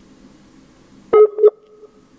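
Two short electronic beeps at one steady pitch, about a quarter second apart, over a faint steady room hum.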